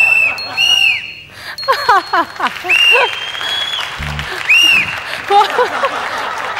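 Laughter mixed with repeated short, high squeaky sounds and a few quick falling-pitch glides. A brief low thud comes about four seconds in.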